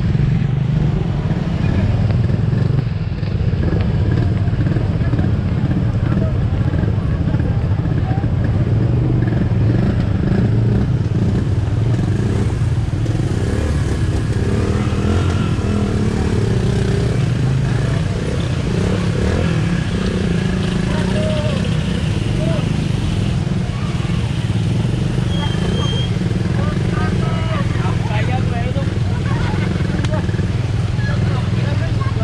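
A motorcycle running steadily on the move, with people's voices over it.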